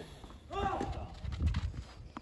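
A clay-court tennis rally: about half a second in, a shot from the far end with a short player's grunt falling in pitch. It is followed by a run of quick footsteps scuffing on the clay.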